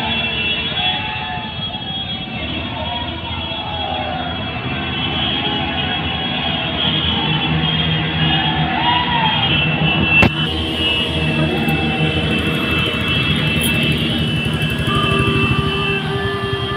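Loud music over loudspeakers, with a wavering sung melody over steady high tones. A single sharp click comes about ten seconds in.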